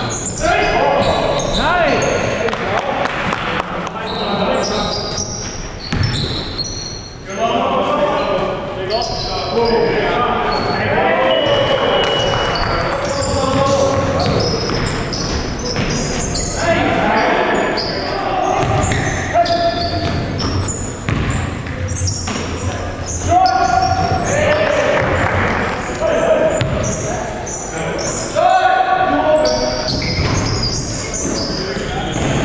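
Live sound of a basketball game in a large gym: a basketball bouncing and hitting the hardwood court again and again, with players' voices shouting and calling out in the hall.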